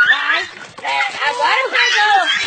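A dog yelping and whining in short, rising and falling cries, with people's voices over it.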